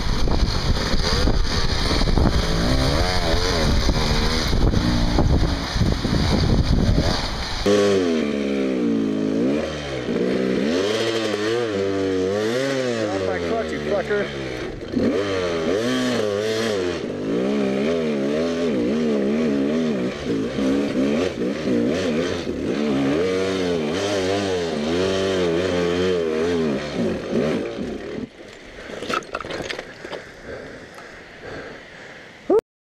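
Dirt bike engine revving hard under load on a steep rocky climb. About eight seconds in, the sound changes to a closer engine note that rises and falls continuously with the throttle for about twenty seconds, then drops away near the end.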